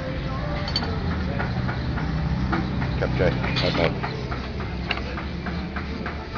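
Background chatter of diners at a busy eatery over a steady low hum, with scattered short clicks.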